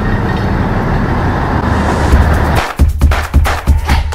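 A canal boat under way: a steady rumble of its engine and rushing water. About two and a half seconds in this gives way to percussive background music with a heavy, punchy beat.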